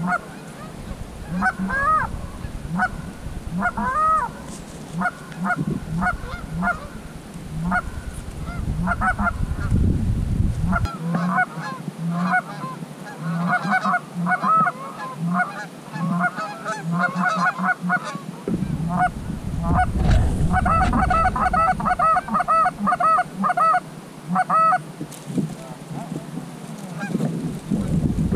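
Canada geese honking, a string of short honks and clucks that come thicker and faster in the second half. Twice the low rumble of wind on the microphone.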